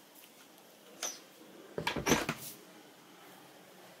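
A motorhome's interior door being handled: a click about a second in, then a quick loud run of knocks and rattles about two seconds in.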